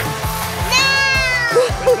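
A toddler's high-pitched squeal, about a second long and falling slightly in pitch, over background music.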